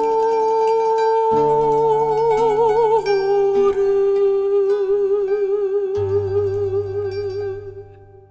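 A woman's classical voice holds the closing notes of an early song with vibrato, stepping down once about three seconds in, over plucked guitar and mandolin. A low guitar bass note comes in near six seconds and the music fades out at the end.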